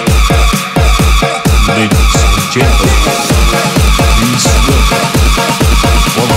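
Indonesian 'jedag jedug' DJ remix: electronic dance music at full volume with a fast, steady beat of heavy bass hits that slide down in pitch, several to the second.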